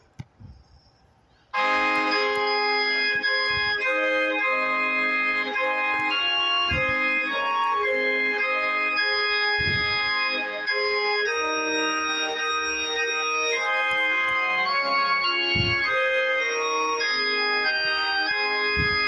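Organ music playing slow, sustained held chords that shift from one to the next, starting suddenly about a second and a half in after near silence.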